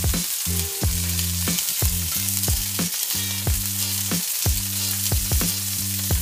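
Raw tuna strips sizzling in hot grapeseed oil in a cast iron skillet as they are laid in with tongs, a steady hiss. Low background music with a regular beat runs underneath.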